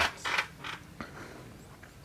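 Trampoline springs and frame sounding under people moving on the mat: a few short noisy sounds in the first second and a single click about a second in.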